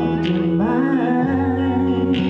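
A woman singing long, held notes that glide between pitches, over an instrumental backing track.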